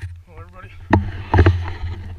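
Footsteps crunching through dry leaf litter, a few heavy steps, over a steady low rumble on the microphone.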